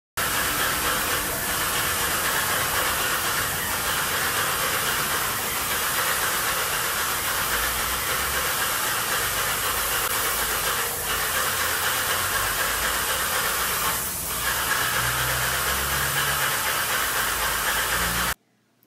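Airless paint sprayer spraying paint onto a ceiling: a loud, steady hiss of the spray that dips briefly once near the end.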